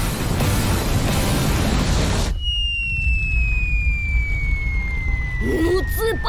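Cartoon sound effects for a blazing ball flying through the sky. A dense rushing noise with a deep rumble runs for about two seconds and cuts off suddenly. Then a long whistle slowly falls in pitch as the ball drops away, with a short vocal exclamation near the end.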